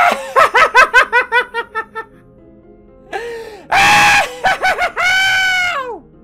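A person laughing over soft background music: a run of quick 'ha' notes, about six a second, fading out over the first two seconds, then a second loud laugh that ends in a long, high held note falling away at the end.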